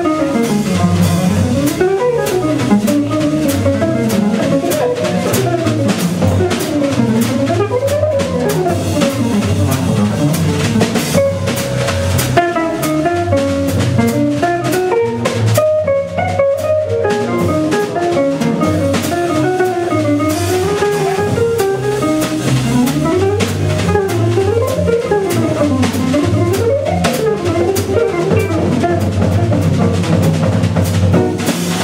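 Live small-group jazz: a hollow-body electric jazz guitar plays fast rising and falling runs over double bass and a drum kit.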